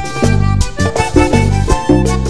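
Live vallenato band playing an instrumental passage: button accordion carrying the melody over electric bass, congas and a hand drum, with a steady rhythmic beat.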